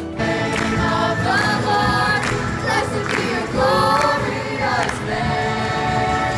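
A student choir of mostly women's voices singing a worship song together, with some hand clapping along.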